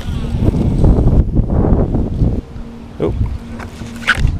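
Wind and handling rumble on the microphone for about the first two seconds. A steady electric trolling-motor hum runs underneath, holding the boat in place, and a short exclamation comes near the end.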